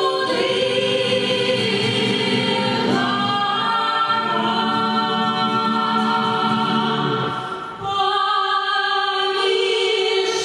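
Small mixed vocal ensemble, men's and a woman's voices, singing a Belarusian folk song in close harmony on long held notes. A short break between phrases comes about three-quarters of the way through.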